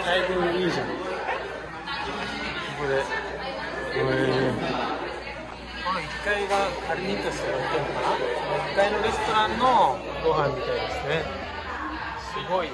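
Several people talking at once around a dining table, voices overlapping in a continuous chatter in a large room.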